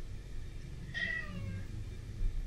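A cat gives a single meow about a second in, lasting about half a second and falling in pitch.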